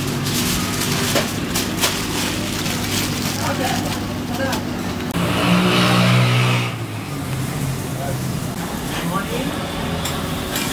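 Aluminium foil crinkling as a burger is wrapped, over a steady machine hum of a busy kitchen with background voices. About five seconds in, a louder drone rises for about a second and a half, then falls away.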